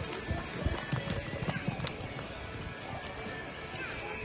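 Hoofbeats of a galloping horse in soft arena dirt, an uneven run of dull thuds as it races and turns around the barrels.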